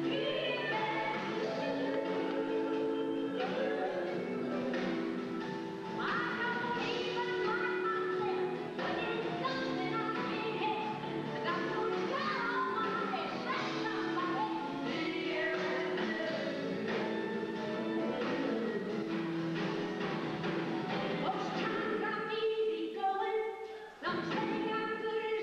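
Live country-blues song: acoustic guitar strummed and picked, with a woman singing. The music dips briefly near the end.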